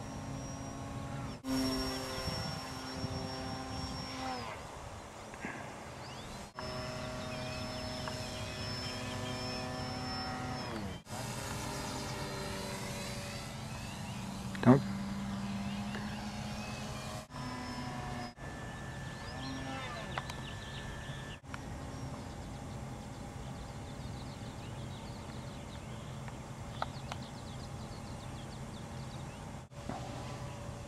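Small electric RC airplane motors and propellers whining in flight, a steady pitched hum in several short takes that each slide down in pitch as the throttle comes off, over a low wind-like rumble. A single sharp click sounds about halfway through.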